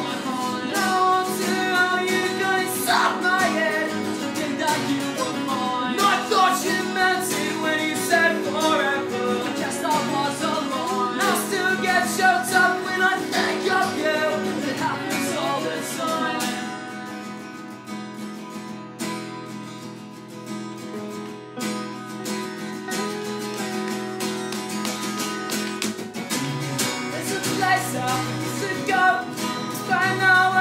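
Acoustic guitars playing a pop-punk song, with singing over the first half. About halfway through the playing drops quieter and sparser, then it builds back up near the end.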